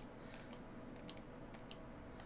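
Faint, quick clicks of a Fire TV remote's select button pressed over and over, a few times a second at uneven spacing. It is the seven-press tap on the device name that unlocks developer options. Low room hum underneath.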